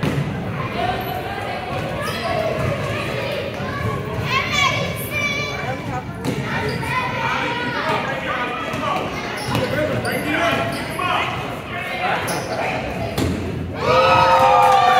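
A basketball bouncing on a hardwood gym floor during play, under shouting from children and adults, all echoing in a large hall.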